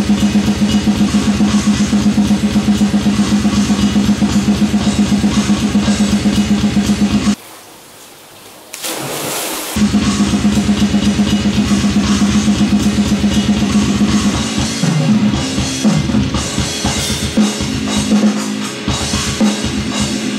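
Acoustic drum kit played hard in fast metal style: a dense, very fast, even stream of kick and snare strokes with cymbals. The drumming stops about seven seconds in, a cymbal-like hiss follows, and it starts again about two seconds later. Over the last few seconds it turns into a more broken pattern of fills.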